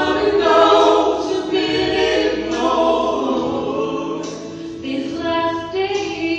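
A family gospel group singing a song together in harmony, several voices sustaining long notes, heard from the pews of a church sanctuary.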